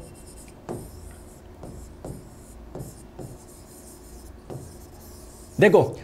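Stylus drawing on an interactive screen: a string of faint, short scratching strokes with small gaps as looping lines are drawn.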